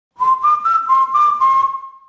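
A short whistled melody of a few held notes stepping up and down, over a light ticking beat and fading away near the end: a radio station jingle between segments.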